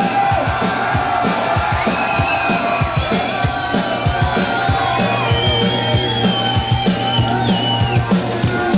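Live Breton punk rock: electric guitar over a fast, driving drum beat, with a steady low drone and a high, wavering melody line above, typical of the band's bagpipes.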